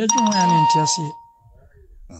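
A voice talking while a steady electronic beep tone sounds over it; both stop a little over a second in, leaving a quiet stretch.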